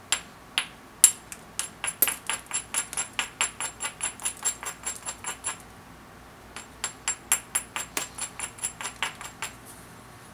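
A hand-held stone worked in short, quick strokes against the edge of a banded obsidian knife blank: two runs of sharp, glassy clicks, about four a second, with a brief pause between them.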